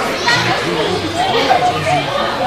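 Indistinct voices of children and adults talking and calling out over one another in a large indoor sports hall.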